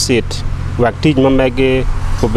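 A man's voice speaking into a microphone in short phrases, with a steady low hum underneath.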